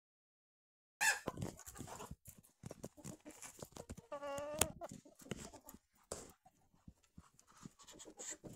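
Chickens and ducks feeding on bare ground: scattered sharp pecking clicks and scratching, with one drawn-out call about four seconds in.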